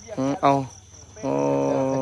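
Crickets chirring steadily as a thin, high, unbroken background. A man's voice says a short word near the start, then holds one long drawn-out note for the last second, the loudest sound.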